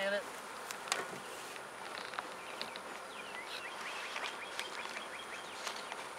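Honeybees buzzing in a steady hum around an opened hive, with a sharp knock about a second in and another near the end.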